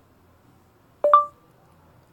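Android phone's voice-input start beep: one short electronic tone about a second in, the signal that voice search has begun listening.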